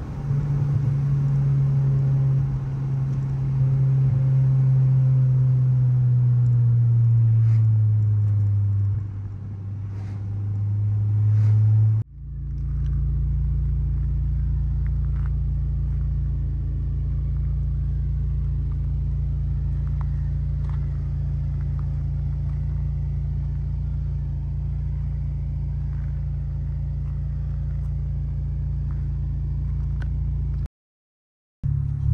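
Honda Civic Si's 2.4-litre K24 four-cylinder, fitted with a catless downpipe and a Yonaka 3-inch exhaust, heard from inside the cabin under way: the engine note slides slowly lower for several seconds, dips, then climbs briefly. About twelve seconds in it cuts to the same exhaust idling steadily with the car parked.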